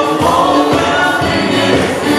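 A gospel choir and band performing live, with the audience clapping along to the beat.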